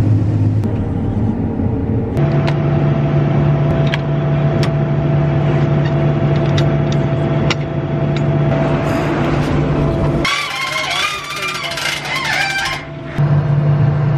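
Combine harvester running steadily with a low engine hum; about two seconds in, the hum steps up in pitch. Around ten seconds in the hum drops out for a few seconds under a fainter, wavering, higher sound, then the steady hum returns.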